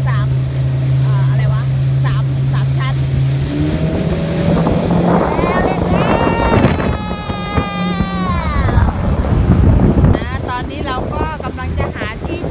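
Motorboat engine running under way with water rushing past the hull. The engine note rises about three and a half seconds in as it speeds up, and a high whine that slides slightly downward comes in over the middle.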